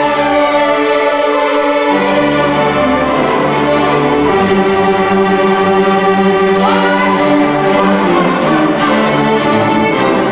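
Student string orchestra of violins, violas, cellos and basses playing together, held chords moving from one to the next every second or two.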